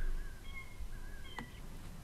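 Faint bird calls in the background: a few short, thin, steady notes during the first second and a half, with a soft click about one and a half seconds in.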